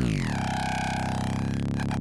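Synthesized bass note from a Kilohearts Phase Plant patch, heard through the nonlinear filter in its Biased mode. It is a dense, buzzy tone that sweeps in pitch at the start, then holds with a fast flutter that grows choppier toward the end.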